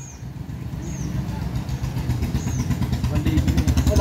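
A motorcycle engine running close by, getting steadily louder, with a few short bird chirps.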